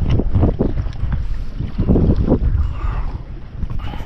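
Wind buffeting an outdoor camera microphone: a loud low rumble that surges in gusts.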